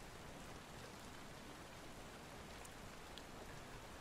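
Heavy rain falling steadily, a faint even hiss with a few light drop ticks in the second half.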